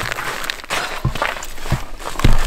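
Irregular crunching scuffs and sharp knocks on snow-crusted lake ice, from boots shifting and a hand grabbing at a flopping brook trout.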